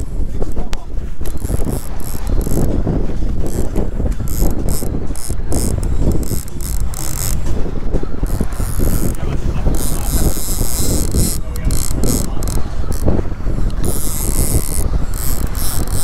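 Fishing reel cranked under load against a hooked sailfish on light line, its gears and drag ratcheting in broken runs that stop and start, over a steady rush of wind and sea.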